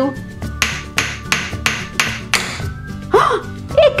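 Wooden mallet knocking a ball down through the hole of a wooden pound-a-ball tower toy, about eight quick knocks at roughly four a second, with the ball getting stuck partway down.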